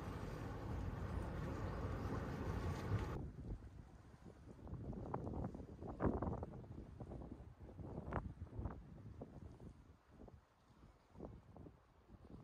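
Wind buffeting the microphone, a steady rush that cuts off abruptly about three seconds in. After it comes a quieter stretch of irregular soft knocks and thumps.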